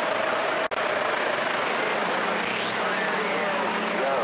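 CB radio receiver static: a steady rushing hiss with faint, garbled voices buried in it. A steady tone sounds until a brief dropout under a second in, and a low hum comes in about halfway through.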